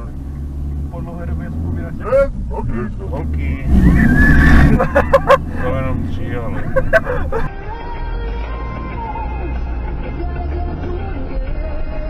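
Road noise inside a moving car with people's voices, loudest about four to five seconds in. About seven and a half seconds in the sound changes suddenly to a steadier car-cabin drone with faint music.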